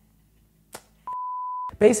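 A single short electronic beep at one steady pitch, lasting about two-thirds of a second just past the middle: the standard 1 kHz bleep tone added in editing. A faint click comes shortly before it.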